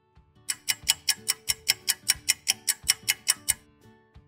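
Ticking-clock sound effect: a quick, even run of ticks, about six a second, starting about half a second in and stopping near the end, over faint background music.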